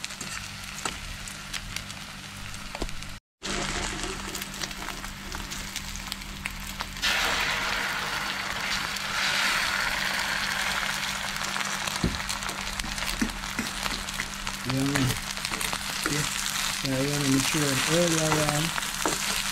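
Eggs frying in hot oil in a pan, sizzling steadily. There is a brief dropout about three seconds in. About seven seconds in, the sizzle grows clearly louder and brighter and stays so.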